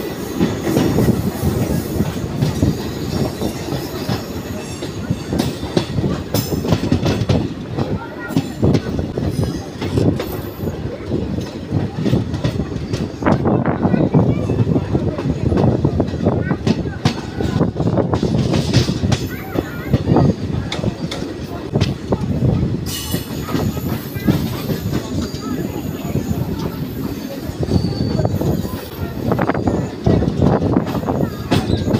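Passenger train running through junction points, heard at an open coach doorway: a continuous wheel rumble with rapid clickety-clack over rail joints and crossings, and some wheel squeal.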